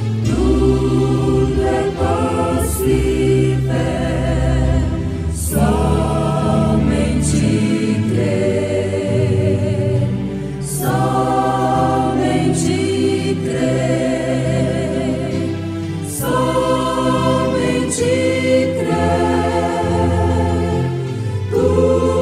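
A choir singing a gospel hymn in several voices over sustained low accompaniment, phrase after phrase of about five seconds each with short breaks between them.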